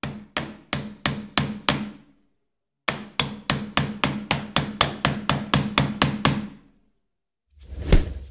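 Metal meat-tenderizer mallet pounding into a bowl. There are six quick knocks, a short pause, then a faster run of about sixteen, each with a brief low ring. Near the end a short swelling rush ends in a sharp hit.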